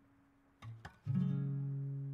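Gentle acoustic guitar background music: one chord dies away, then a new chord is plucked just over half a second in and rings on, louder from about a second in.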